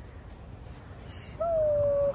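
A puppy whining once: a single short, steady, high whine in the second half.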